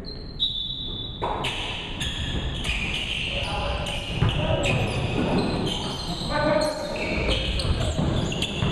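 Basketball game play on a hardwood gym floor: sneakers squeaking in short repeated chirps, the ball bouncing, and players calling out in a large echoing hall. It grows busier after the first second or so, once play gets going.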